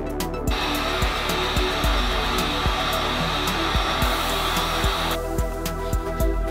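Electric heat gun blowing steadily, switching on about half a second in and cutting off about five seconds in. Background electronic music with a steady beat plays throughout.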